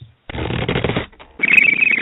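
A short produced sound-effect stinger marking the change of segment: a dense crackling burst lasting under a second, then a higher, rapidly fluttering sound near the end.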